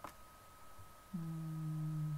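A single mouse click, then, just past a second in, a person hums a steady low 'mmm', held for about a second. A faint, constant high-pitched whine runs underneath.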